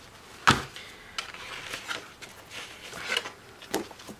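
A thick stack of printed paper colouring sheets being handled: one sharp knock about half a second in, then paper rustling and a few light taps as the stack is moved.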